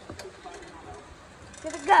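Mostly a quiet outdoor background with a faint click just after the start and faint voices, then a voice saying "Go" at the very end.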